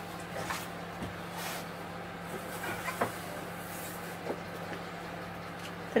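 A few faint, scattered knocks and clicks of handling over a steady low hum.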